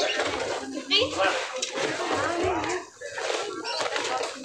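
Indistinct voices of several people talking in the background, with nobody speaking clearly into the microphone.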